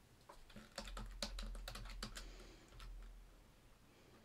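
Faint typing on a computer keyboard: a quick run of key clicks as a new column name is typed in, over a low hum.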